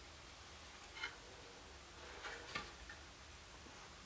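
A few faint clicks and ticks from a hand working the altitude clutch knob and tube of a small tabletop reflecting telescope, one about a second in and a small cluster around two and a half seconds, over quiet room tone.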